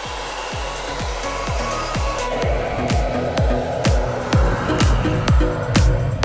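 Hand-held hair dryer blowing steadily into a frozen-up refrigerator ice maker to defrost it, under electronic dance music whose steady kick-drum beat, about two beats a second, comes in shortly after the start.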